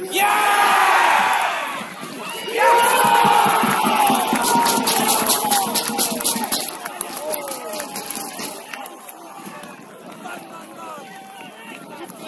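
Football crowd cheering a goal, the equaliser. A loud roar of shouting voices breaks off briefly and rises again, with a run of quick claps in the middle, then dies down to scattered shouts.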